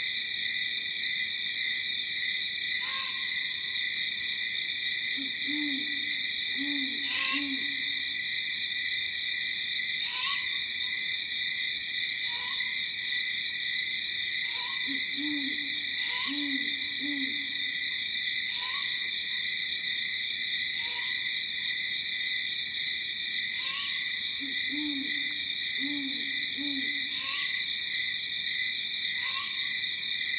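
An owl hooting in groups of three low hoots, the group coming back about every ten seconds. Under it, a steady high shrill chorus of night insects and a short higher call repeated every couple of seconds.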